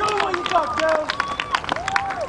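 Several voices shouting and calling out over one another during a football match, with many short sharp taps throughout.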